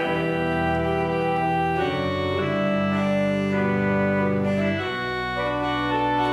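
Church organ playing held chords of a hymn, with no singing. The chords change about two seconds in and again near five seconds.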